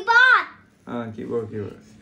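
Only voices: a young child's high-pitched, loud call at the start, then a man speaking briefly in a lower voice.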